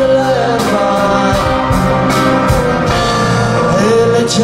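Live rock band playing an Italian progressive-rock song: drum kit with regular cymbal strikes, guitars, bass and keyboards, with a held melody line over them.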